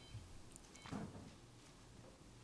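Near silence: room tone with a faint steady low hum, a few faint ticks, and one faint spoken word about a second in.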